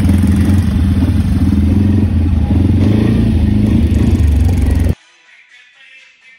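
ATV (quad bike) engine roaring with a rough, low drone while riding. It cuts off abruptly about five seconds in, and faint music follows.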